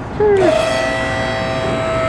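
Two-post car lift's electric hydraulic power unit switched on and running as the lift raises the car: a steady whine that starts sharply about half a second in.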